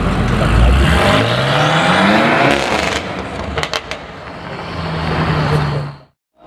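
BMW M8 Competition's twin-turbo V8, fitted with downpipes, revving as the car pulls away: the engine pitch rises over about two seconds, a few sharp cracks follow about three and a half seconds in, then the sound dies down.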